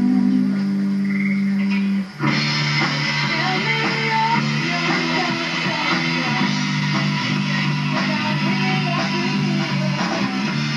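Rock music with distorted electric guitar: a held low chord, a brief break about two seconds in, then a fuller, denser guitar part over steady bass notes.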